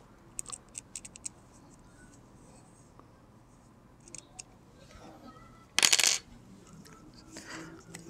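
Light metallic clicks and taps of a hex key working the threaded steel pins set in a PVC-pipe knotting jig, with a short, louder scrape about six seconds in.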